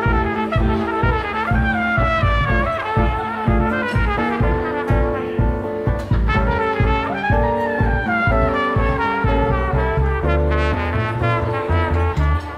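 Small jazz trio playing instrumentally: a trumpet carries a flowing melody over archtop guitar chords and a plucked double bass keeping a steady pulse.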